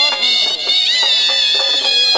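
Shehnai double-reed pipes playing a loud, high, reedy melody with sliding notes, as folk music.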